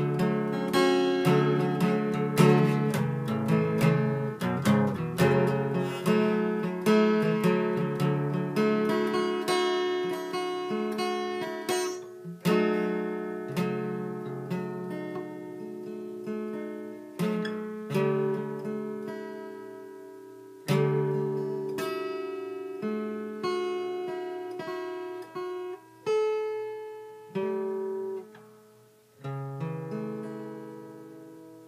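Solo acoustic guitar played without singing. It is busy and quick for about the first twelve seconds, then slows to single chords struck every second or few and left to ring and fade.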